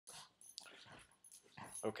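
Faint sounds from a Boston terrier gripping a man's foot, followed near the end by a man's voice starting to speak.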